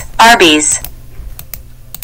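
A read-aloud computer voice saying "Arby's" once, its pitch falling, followed by a few sharp clicks.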